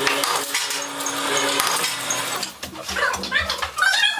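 A wooden mallet strikes a sheet-metal brush ferrule on an iron form, giving repeated metallic clinks over background music with held tones. The music drops out about two and a half seconds in, and short rising and falling calls follow near the end.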